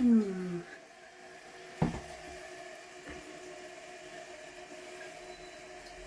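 Toilet tank fill valve running as the new tank refills after the water supply is turned on: a steady faint hiss with a low held tone. A drawn-out voice trails off in the first half second, and a single short knock comes about two seconds in.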